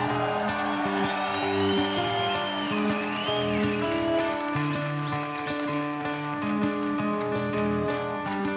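Progressive rock band playing live in a slower passage: sustained chords under a high lead line that glides up and down, then a few short rising chirps. A regular ticking of cymbals comes in near the end.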